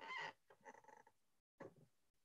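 Near silence, broken by a couple of faint, brief sounds in the first second.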